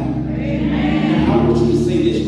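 Gospel singing by a group of voices with musical accompaniment, holding long sustained notes.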